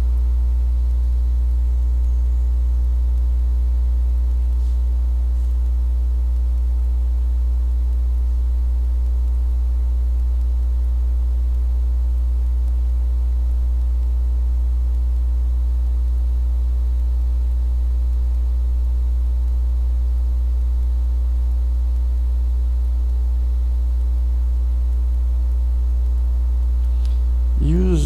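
Steady electrical mains hum, a loud low buzz with a row of higher overtones, unchanging throughout; a voice starts right at the end.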